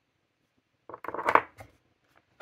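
A small plastic-capped ink sample vial being set down on the desk: a quick cluster of clicks and knocks about a second in.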